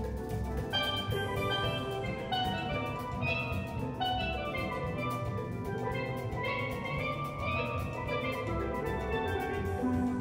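Steel band playing: many steel pans sound a melody and chords over drum kit and percussion, while a player strikes a pair of chrome pans.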